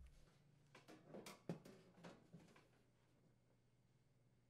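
Faint handling sounds: a few soft knocks and clicks from a microwave's sheet-metal side panel being set back into place on its frame, in the first half, otherwise near silence.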